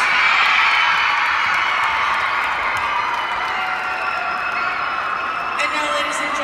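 A group of high voices screaming and cheering at once, loudest at the start and fading slowly. It is a reaction to hearing that the team is in first place.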